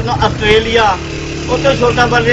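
A man talking, with a pause about a second in where a steady low engine hum carries on underneath before his voice resumes.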